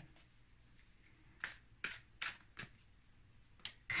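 A deck of tarot cards shuffled by hand, faint, with about five short card slaps in the second half.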